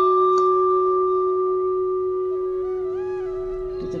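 The long ring of a struck antique metal vessel, two clear steady tones fading slowly.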